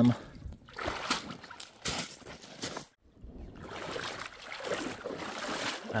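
Footsteps crunching on loose pebbles at the edge of a lake, with small splashes of water, in irregular steps. The sound breaks off briefly about halfway.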